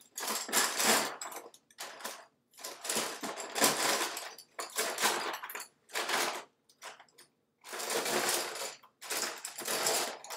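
Colored pencils and other drawing utensils rattling and clattering as a hand rummages through a box of them, in bursts of about a second with short pauses between.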